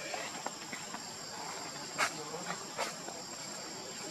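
Insects calling steadily with a thin, high, even tone. Two short sharp clicks stand out, one about two seconds in (the loudest) and another just before three seconds.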